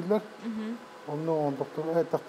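A man's voice talking, with a short pause in the middle.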